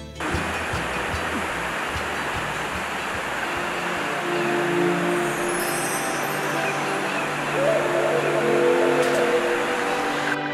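Steady rush of a fast mountain river running over rocks, starting abruptly, with soft background music fading in about four seconds in.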